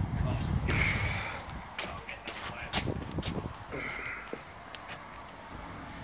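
Garden wood fire with a burning magnesium plate in it, crackling with scattered sharp pops. A low rumble, like handling or wind on the microphone, runs through the first second or so.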